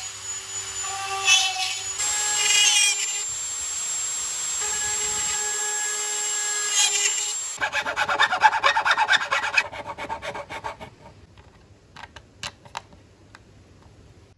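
Handheld rotary tool running at high speed with a steady whine, cutting porthole openings into a wooden boat hull. About seven and a half seconds in it stops, and a needle file rasps quickly back and forth in an opening for a couple of seconds. Near the end come a few light clicks.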